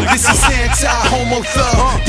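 Hip hop music: rapped vocals over a beat with a strong bass line.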